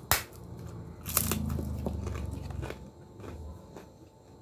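A crispy fried cracker being snapped and crushed by hand: one sharp crack at the start, then a longer, louder crunching a second later, followed by a few small crackles.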